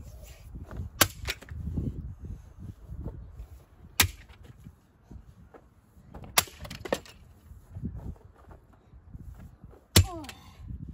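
Sledgehammer blows smashing junk on bare ground: sharp cracking hits about a second in, at four seconds, and at about six and a half seconds with a quick lighter second hit, then another right at the end.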